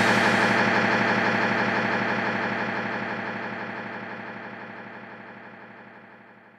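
Final chord of a rock song on distorted electric guitar, ringing out after the band stops and fading away steadily, with a fine fast wavering in its tone.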